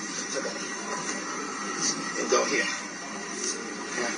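Indistinct speech from a video clip being played back, over steady background noise, with a louder stretch about two and a half seconds in.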